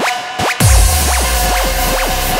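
Trance music in a DJ mix: a build-up of evenly repeating sweeping notes breaks about half a second in into the drop, with deep bass and a full beat coming in suddenly and carrying on loud.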